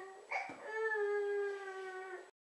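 Toddler whining: a long drawn-out cry at a steady pitch ends a moment in, and after a quick breath a second long cry follows.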